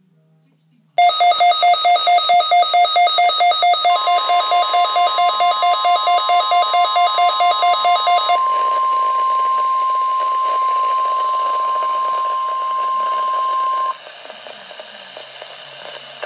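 Midland WR-120 weather radio sounding its alert for the NOAA Required Weekly Test: rapid electronic beeping, about four beeps a second, starts about a second in. About three seconds later the broadcast's steady single-pitch warning alarm tone comes in over the speaker; the beeping stops after about eight seconds and the steady tone runs on until it cuts off near the end.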